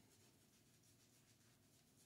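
Near silence, with only a faint scratching of a scrubbing pad rubbed over soapy skin.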